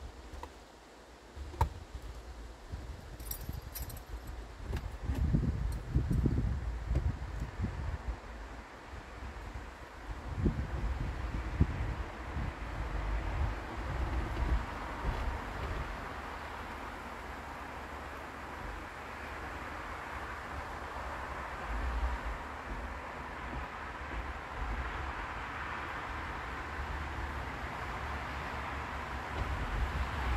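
Wind outdoors: gusts buffeting the microphone, then a steady rushing that slowly builds over the second half, with a light click and a few small jingling ticks early on.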